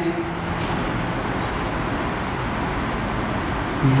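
Steady background noise: an even, constant hiss and rumble with no distinct events.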